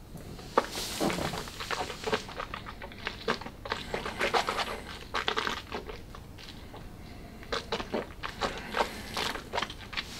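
A sip of whisky from a tasting glass, followed by a long run of wet mouth sounds: lip smacks, tongue clicks and swishing as the whisky is worked around the mouth to taste it.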